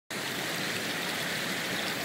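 Steady rush of flowing river water.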